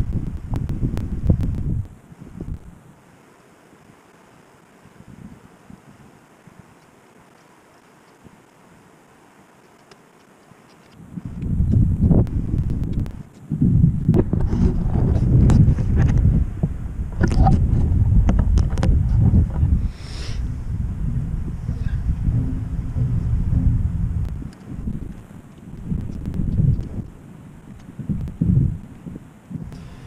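Wind buffeting the camera microphone in gusts, a low rumbling noise. It drops to a lull after a couple of seconds, then picks up strongly again about eleven seconds in and keeps gusting.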